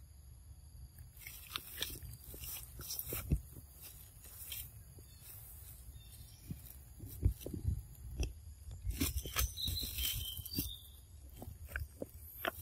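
A macaque chewing food close to the microphone: irregular crisp crunches and clicks in two spells, with quieter pauses between.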